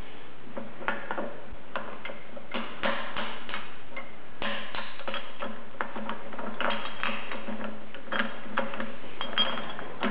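Hammer tapping an offset screwdriver wedged between a bearing and its collar to drive the bearing off a Bridgeport 2J variable-speed drive's front pulley assembly. It makes a series of irregular light metallic taps, a few of them ringing briefly.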